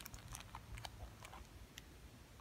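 Faint crinkling and scattered small clicks of a clear plastic bag as the large can badge inside it is held and turned in the hands.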